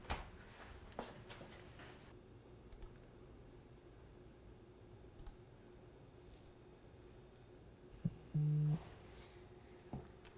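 A cabinet door clicks shut at the start, followed by a few soft computer-mouse clicks over a faint steady room hum. Near the end comes the loudest sound, a short low buzz of about half a second, like a phone vibrating.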